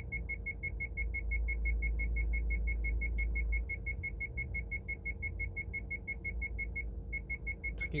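A car's electronic warning beeper sounding a rapid train of short, high beeps, about six a second, with a brief break near the end. A steady low rumble from the car runs under it.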